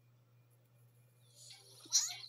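Near silence over a faint, steady low hum. About a second and a half in, a faint hissy, voice-like sound begins to rise.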